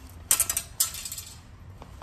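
Two quick bursts of close rattling clatter, about half a second apart.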